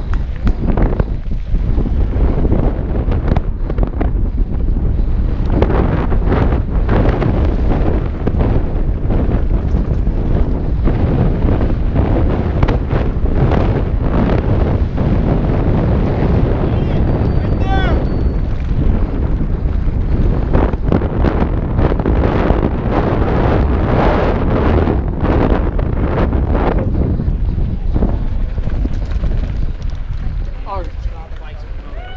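Wind rushing over a helmet-mounted action camera's microphone as a mountain bike is ridden fast down a dry dirt trail, with the bike rattling and clattering over the rough ground.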